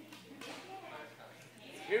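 Low chatter of adults and toddlers, with a louder voice starting to speak near the end.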